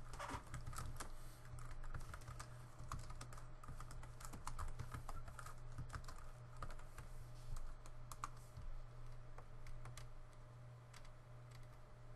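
Typing on a computer keyboard: irregular keystrokes, with a steady low hum underneath.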